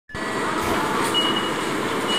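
Busy railway station concourse at a row of automatic ticket gates: a steady wash of ambient noise, with one short high beep a little over a second in.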